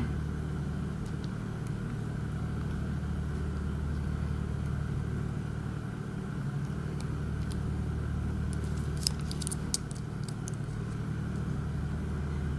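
Steady low drone of a running generator engine, with a few faint clicks of a pick working the pins of a dimple lock about nine seconds in.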